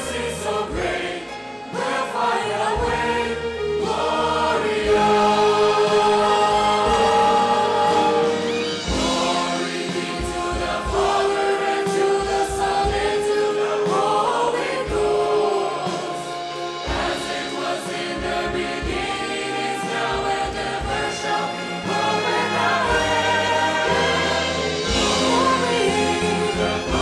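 A large mixed choir singing long held notes with orchestral accompaniment, a woman soloist on a microphone singing along with them.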